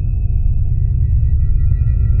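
Dark ambient horror film score: a deep steady rumble under long, held high tones.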